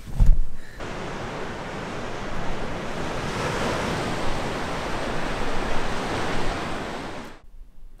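Waves breaking against a seawall, a steady rush of surf mixed with wind, cutting off suddenly near the end. A brief low thump at the very start.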